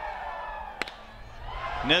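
Ballpark crowd murmur, then a single sharp crack of a bat hitting the pitched ball, lifting a fly ball; the crowd noise swells after the hit.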